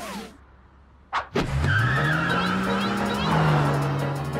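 Cartoon car sound effect: after a short lull and a sharp noise about a second in, the engine revs up in a steep rising pitch and holds as the car speeds off.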